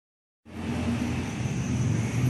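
A Honda CBR600RR's inline-four engine idling steadily, coming in about half a second in.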